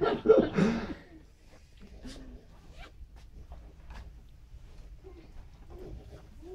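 A man's voice through a microphone ending about a second in, then a quiet room with faint rustles and small clicks of paper being handled, and a few brief, faint murmurs.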